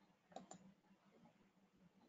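Near silence broken by a faint double-click of a computer mouse button about a third of a second in, with a faint low hum beneath.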